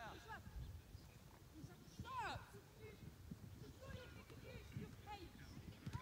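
Faint, distant shouting and calling voices of boys and coaches at a football training drill, with one louder call that falls in pitch about two seconds in.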